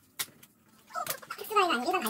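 Kitchen scissors give one sharp snip through cooked snow crab shell just after the start. From about a second in, a wavering, indistinct human voice takes over and is the loudest sound.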